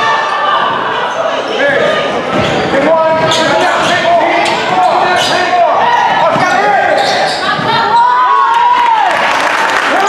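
Basketball being dribbled on an indoor court during a game, with sneakers squeaking on the floor and voices around the hall.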